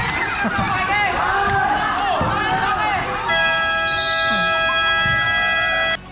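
Spectators at a basketball game shouting and cheering, many voices at once. A little over three seconds in, a long steady horn blast, like a game buzzer, sounds for nearly three seconds and cuts off sharply.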